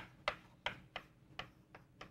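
Chalk tapping and scratching on a chalkboard as an equation is written: a run of short, sharp taps, about three a second and unevenly spaced.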